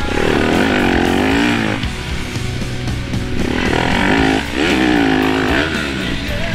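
Yamaha YZ250F 250 cc single-cylinder four-stroke dirt bike engine revving up and down under throttle, in two long pulls, over background music.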